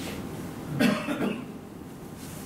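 A person coughing once, briefly, about a second in, over low room noise.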